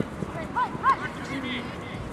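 Players shouting short, high calls across the field, two quick ones a little over half a second in, over steady outdoor background noise.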